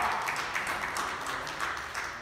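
Congregation clapping and applauding, a dense patter of many hands.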